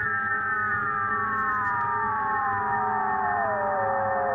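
Electronic music: synthesized tones gliding slowly and steadily downward in pitch over a steady low drone.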